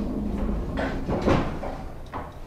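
Manual pallet jack carrying a loaded pallet being pulled across a box truck's wooden floor: a low rumble from the rolling wheels with a couple of rattling knocks around the middle.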